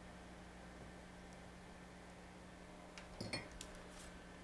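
Faint room tone with a steady low hum. About three seconds in, a brief soft rustle and a few light clicks as the paper-pieced block is handled.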